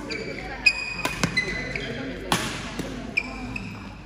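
Badminton rally on an indoor court: sharp racket-on-shuttlecock hits, the loudest about two-thirds of a second in, with a few more around a second in, and court shoes squeaking in short high chirps several times. A short burst of noise comes just past the middle.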